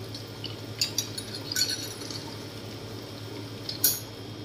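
Commercial espresso machine running with a steady low hum as liquid runs from the group head into a glass jug. A few sharp glass clinks and clicks come through it, the loudest just before the end.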